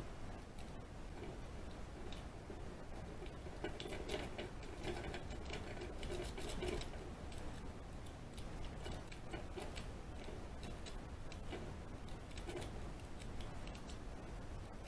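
Lock pick raking the pins of a small lock held under tension: quick, irregular light metallic clicks and scratches, busiest between about four and seven seconds in.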